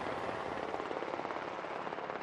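Helicopter rotors beating overhead: a steady, rapid pulsing over a broad rush of noise.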